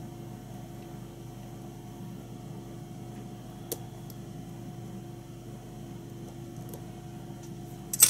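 Steady low electrical hum of room tone, with a single faint click about three and a half seconds in.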